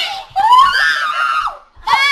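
Young girls screaming loudly and high-pitched in excited, playful shrieks: one long scream from about half a second in, then a fresh one starting near the end.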